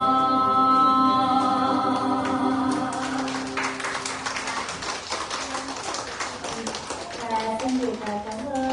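A woman singing a long held final note over acoustic guitar, then a crowd applauding from about three seconds in as the song ends. A voice starts near the end.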